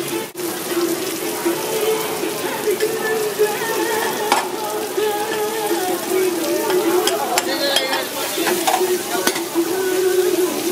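Razor clams, garlic and chilies sizzling on a hot steel flat-top griddle while a pat of butter melts and fries beside them, with a few short clicks of metal spatulas on the steel. A steady wavering hum runs underneath.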